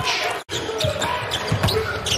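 Court sound of a basketball game: a basketball dribbled on the hardwood floor, with irregular thumps. The sound cuts out completely for a moment just under half a second in.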